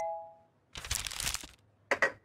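A short electronic chime of two steady notes at the very start, the correct-answer signal of a guessing game. About a second in comes a rustling scrape of plastic cups and a crumpled paper ball being handled on a wooden tabletop, with another brief rustle at the end.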